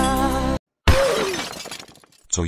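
A held musical chord that cuts off abruptly, then after a short silence a sudden crash like shattering glass, which dies away over about a second.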